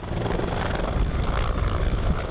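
Firefighting helicopter carrying a water bucket, its rotor chop and engine noise loud and steady.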